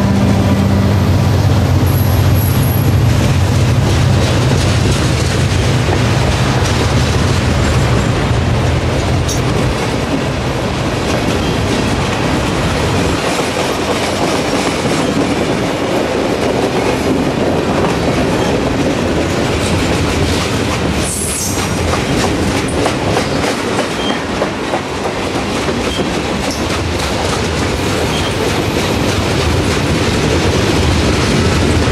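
Diesel-hauled freight train passing close by: the locomotive's engine rumble fades over the first few seconds as the freight cars roll past, with the wheels clicking steadily over the rail joints. A brief high wheel squeal comes about two-thirds of the way through.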